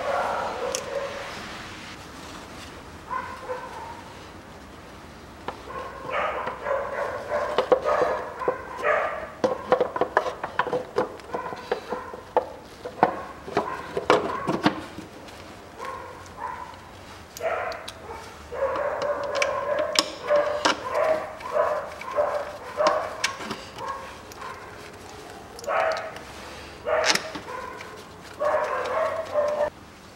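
Plastic timing-belt cover being fitted over the engine, with light clicks and knocks of plastic and tools throughout. Mixed in are many short, repeated yelps and barks from a dog, in clusters from about six seconds in.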